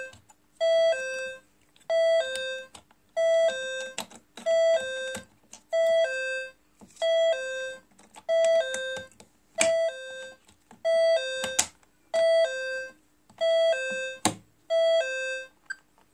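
Atom S-1235 syringe pump sounding its electronic alarm: a two-note falling chime, high then low, repeated about every 1.3 s, which stops about a second before the end. Light clicks from the syringe and clamp being handled come between the chimes.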